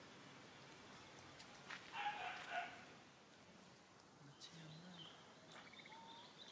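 A brief animal call about two seconds in, the loudest sound, over a faint outdoor background, followed near the end by a faint high-pitched sound.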